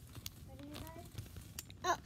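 Mostly quiet: a child's faint voice briefly about half a second in, a few small clicks and rustles of movement, then a girl saying "oh" near the end.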